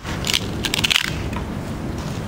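Dry wood cracking and splintering as a stick is split with a hatchet: two quick bursts of crackles, the second longer, near the first second.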